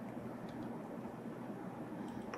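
Steady low background hum and faint hiss: room tone with no distinct event.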